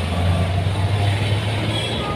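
Street traffic: a steady low engine hum under road noise.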